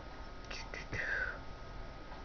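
A woman whispering briefly to herself, about half a second to a second and a half in, over a faint steady electrical hum.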